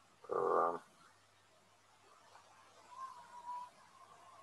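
A man's voice making one short, drawn-out hum of about half a second near the start, a wordless hesitation sound. Low room tone follows, with faint murmuring sounds near the end.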